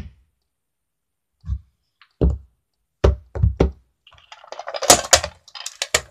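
About five dull knocks on a hard surface close to the microphone, spread over a couple of seconds, then a busy clatter and rattle near the end as a small toy suitcase holding loose bits is handled.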